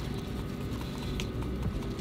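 Wooden stir stick knocking and scraping around the inside of a paper cup while epoxy resin and hardener are being mixed.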